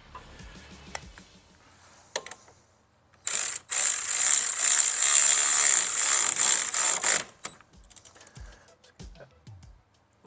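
Hand ratchet winding in a brake caliper bolt: a rapid, continuous run of ratchet clicking for about four seconds, starting about three seconds in, after a few soft clicks and knocks.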